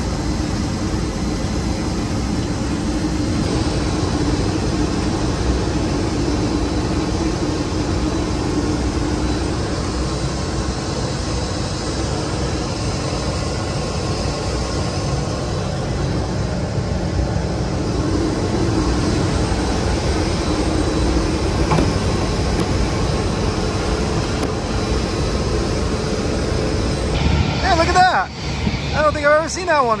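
Steady airport ramp noise, a loud even rush with a low hum, from aircraft and ground equipment around the engine during oil servicing. Near the end the sound cuts to a man's voice.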